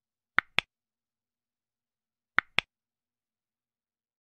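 Two double clicks of a computer-mouse click sound effect: one pair about half a second in and another pair about two seconds later.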